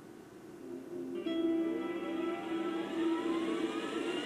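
A steady droning hum that builds about a second in, with a whine rising slowly in pitch over it: the noise of a loud old PlayStation starting up.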